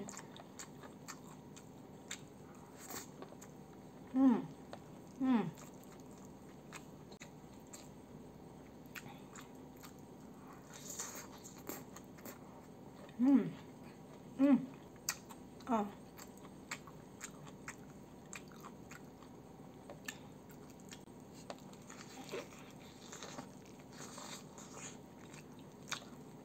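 Close-miked chewing of crispy fried chicken and rice, with a scatter of small crunches and wet mouth clicks. Five short hummed "mm"s, each falling in pitch, stand out from the chewing: two about four and five seconds in, and three more between thirteen and sixteen seconds in.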